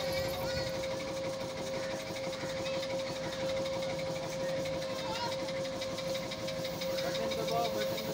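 A rotating children's airplane ride running, with a steady hum and a fast, even ticking from its drive. Faint voices can be heard.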